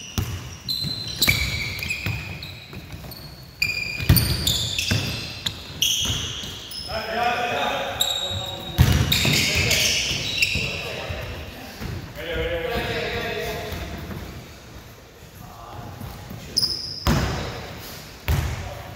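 Basketball dribbled on a hardwood gym floor with repeated bounces, sneakers squeaking in short high chirps and players calling out, all echoing in a large hall.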